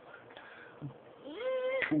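A single high-pitched, drawn-out vocal call lasting about half a second, starting a little past halfway through. It rises at first, holds level, then stops abruptly.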